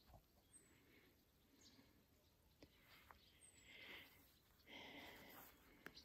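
Near silence: faint outdoor ambience with soft rustling and a couple of brief, faint high chirps.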